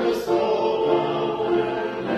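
Mixed church choir of men and women singing a hymn, holding notes that move on every half second or so.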